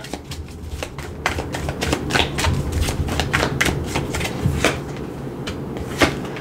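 A deck of tarot cards being shuffled by hand: a run of quick, irregular card clicks and flicks.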